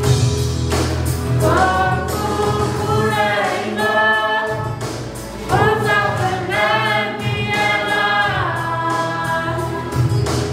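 A youth choir singing a gospel song together in sustained phrases, with a short break between phrases about five seconds in.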